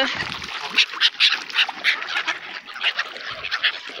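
Mute swans feeding at the water's surface: a run of short, noisy splashes and bill snaps, several a second, as they dabble and grab at bread.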